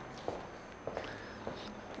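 Faint footsteps on a hard floor: a few soft, irregular steps as people walk along a hallway.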